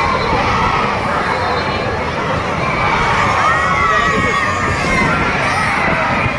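A crowd of children shouting and cheering together, many high voices overlapping, swelling in the middle.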